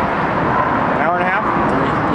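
Steady traffic noise from the freeway overpass above the pond, with a short burst of a person's voice about a second in.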